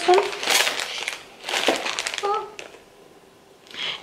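Plastic wax-melt packaging crinkling and rustling as it is rummaged through by hand, in two short bursts over the first two and a half seconds.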